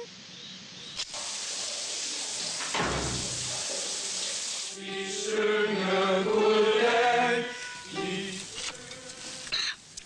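A steady hiss with a low thud about three seconds in, then several voices singing long held notes for about three seconds, the loudest part.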